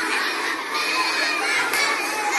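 A large group of schoolchildren laughing together on command, many voices at once.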